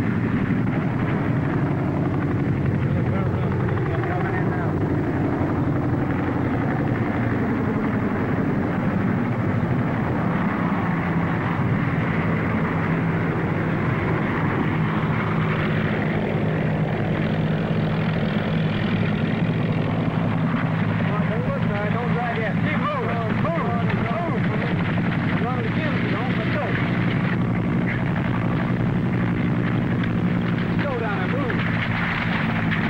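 Medevac helicopter running steadily in flight, its engine and rotor making a loud, even drone as it comes in low to a landing zone.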